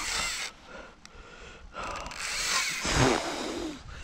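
A man's heavy breathing close to the microphone, two loud breaths with the second one longer, from the strain of playing a big pike on a rod.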